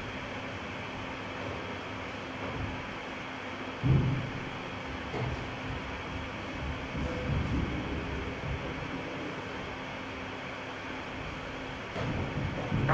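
Steady low background rumble with a faint hum, broken by one dull thump about four seconds in and a few softer knocks later.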